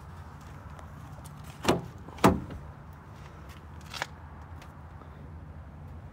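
A pickup truck's rear door being unlatched and pulled open: two sharp clunks about half a second apart a couple of seconds in, then a lighter click, over a low steady hum.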